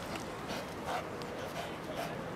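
A shepherd dog making short sounds while it grips and hangs on a helper's bite suit in police-dog bite work, over background chatter from spectators. A few short sharp sounds come about half a second and one second in.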